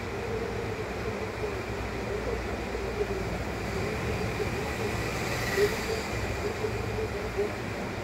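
Steady background rumble and hiss with a faint wavering tone running through it.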